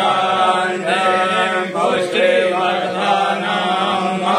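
A male voice chanting a Hindu devotional mantra in a steady, sung recitation over a sustained low drone.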